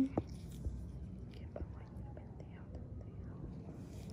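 Faint whispered speech over a steady low room hum, with a few small clicks.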